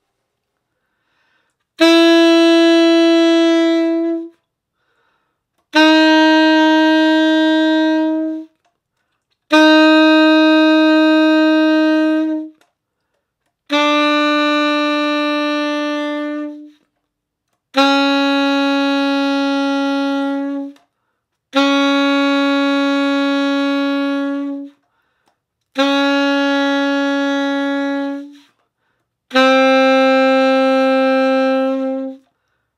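Alto saxophone playing single long held notes one at a time, each about two and a half seconds with a short gap between, stepping down chromatically from written C-sharp in the fingering-by-fingering descent toward low B-flat.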